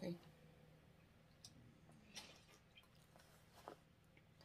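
Near silence with a few faint sips and swallows from a plastic water bottle's spout, about one and a half, two and three and a half seconds in.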